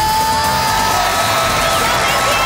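Dance music playing loudly while a studio audience screams and cheers.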